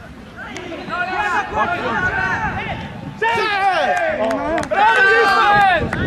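Several voices shouting and calling out at once on a playing field, getting louder about three seconds in.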